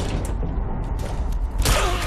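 Low rumble with mechanical creaking, then a sudden loud burst of noise about one and a half seconds in.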